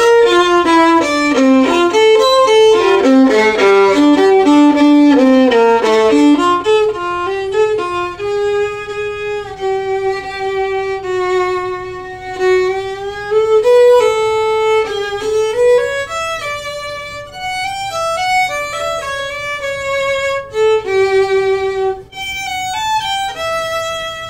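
Solo violin played with the bow: a fast run of quick notes for the first six seconds or so, then a slower melody of long held notes that slide from one pitch to the next.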